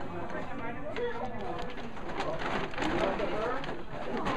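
Background chatter: several people talking at once in a room, overlapping voices with no single clear speaker, with a few light knocks and rustles among them.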